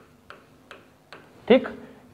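Several light, sharp clicks of a pen tapping the writing board as a word is written by hand, a few each second and not quite evenly spaced. A man says a short word near the end.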